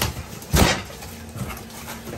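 Packing tape torn off a cardboard box: one short, loud rip about half a second in.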